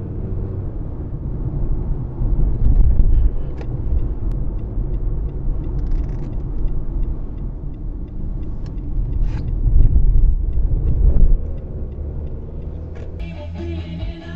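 Low rumble of a car's engine and tyres on the road, heard from inside the cabin while driving, swelling louder twice. Music comes in near the end.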